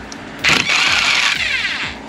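Electric impact driver backing out a bolt on a motorcycle silencer stay: a loud run starting about half a second in and lasting about a second and a half, ending in a falling whine as the motor winds down.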